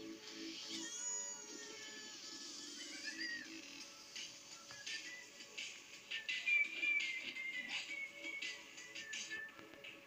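Cartoon soundtrack music played through a television's speaker and picked up in the room, with sounds sliding up and down in pitch in the first few seconds.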